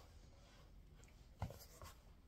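Near silence with faint handling noise: a soft knock about one and a half seconds in, then a brief rustle, from a card cross-stitch kit being moved.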